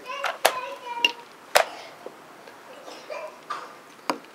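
Two sharp clacks about a second apart, the first about half a second in: plastic chess pieces set down on the board and the chess clock's button being hit during fast blitz play.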